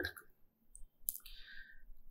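A near-quiet pause in a man's talk, broken by a couple of faint, brief clicks a little under a second and about a second in, then a soft short rustle.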